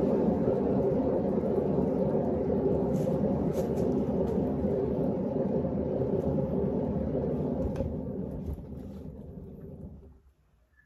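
Canvas spinner turning under a poured acrylic painting: a steady rumble that starts suddenly and dies away over the last couple of seconds as the spin slows and stops.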